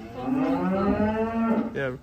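Cow mooing once, one long call of about a second and a half.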